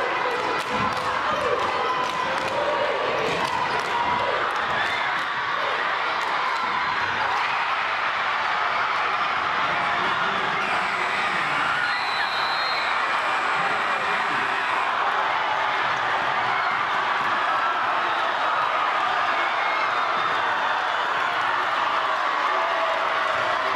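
Basketball crowd in a gym cheering and shouting at a game-winning shot, the noise steady and loud throughout, with a scatter of sharp knocks in the first few seconds.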